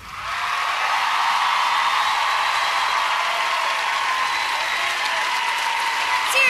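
Studio audience applauding and cheering, swelling up within the first half second after the music ends and then holding steady.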